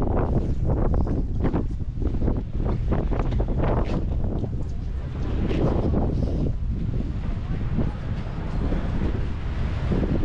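Wind buffeting the microphone: a steady low rumble broken by irregular gusts.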